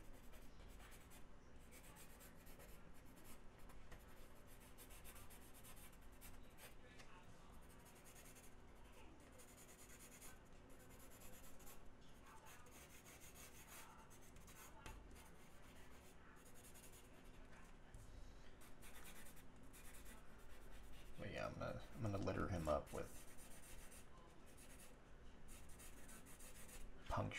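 Blue pencil scratching faintly across drawing board in quick, loose sketching strokes.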